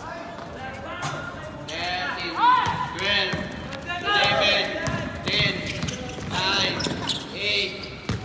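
Basketball game play: sneakers squeaking sharply and repeatedly on the court, a ball bouncing, and players' voices calling out.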